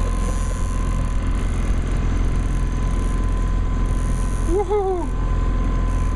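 A steady low rumble with a thin, steady whine over it, and a brief voice sound about five seconds in.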